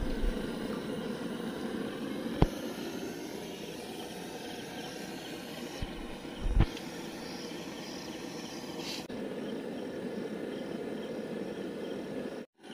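Battered egg chops deep-frying in a wok of hot oil, a steady sizzle of bubbling oil. A metal ladle knocks sharply against the wok twice, about two and a half seconds in and again past six seconds.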